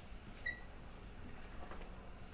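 Pen tip scratching faintly on paper as circles are drawn, with one short, high-pitched squeak about half a second in.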